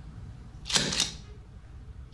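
A hand-held rubber stamp hitting paper twice in quick succession, two sharp knocks about a quarter second apart, stamping "REJECTED" on a parole file.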